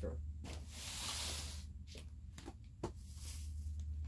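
Rustling and a few light knocks from someone rummaging off-camera to fetch something, over a steady low electrical hum. There is a longer rustle in the first two seconds, sharp clicks a little past halfway, and a second, fainter rustle near the end.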